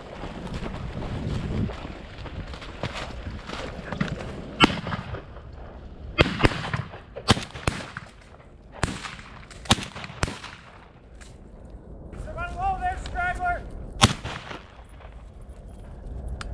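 Shotgun fired repeatedly at flushing quail: a string of sharp reports over several seconds, then one more near the end.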